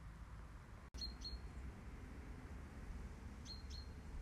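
A small bird chirping twice, two short high chirps each time, once about a second in and again near the end, over a low steady rumble.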